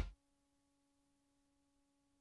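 Near silence after the commercial's music cuts off at the very start, with only a very faint steady tone.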